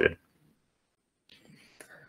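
A speaking voice finishes a word, then a pause of near silence. Late in the pause comes a faint breath with a small mouth click before speech resumes.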